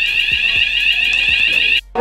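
Building fire alarm sounding: a loud, steady, high-pitched electronic tone with a rapidly repeating sweep above it, cutting off abruptly near the end.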